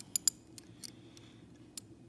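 Polished cast metal puzzle pieces of a Hanayama Vortex clicking against each other as one piece is turned in the fingers: a few sharp metallic clicks, two close together near the start and two more spaced out later.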